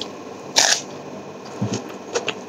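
Close-miked eating sounds of a man chewing a mouthful of rice and vegetable curry: sharp wet mouth clicks, with a louder smacking burst about half a second in and a low thump near the end.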